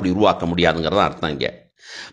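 A person's voice speaking, then a brief pause and a quick intake of breath near the end.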